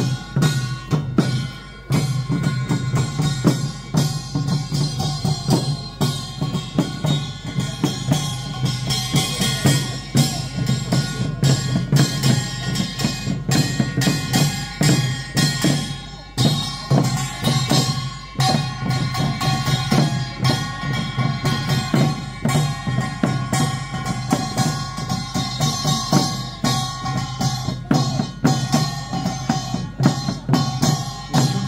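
Korean daechwita royal military band playing on the march: steady drumbeats with frequent strikes under sustained pitched wind-instrument notes.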